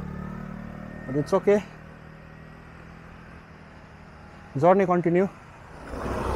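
Motor scooter going past on the road, its engine hum fading away over the first second or two. A man's voice speaks briefly twice, about a second in and again near the end, louder than the scooter.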